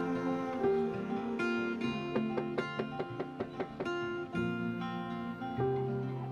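Background music: acoustic guitar picking held notes, with a quicker run of plucked notes in the middle.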